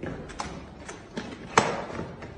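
A few light knocks and taps from a gift box being handled, with one louder thump about one and a half seconds in.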